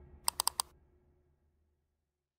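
Four quick, sharp clicks in a row, a sound-effect accent of a TV sports outro graphic, over the dying tail of a low whoosh that fades out to silence.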